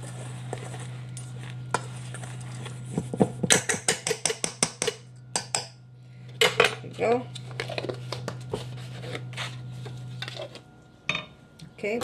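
Metal measuring spoon clinking and tapping against a stainless steel mixing bowl: a quick run of taps about three to five seconds in, then scattered clinks. A steady low hum underneath stops shortly before the end.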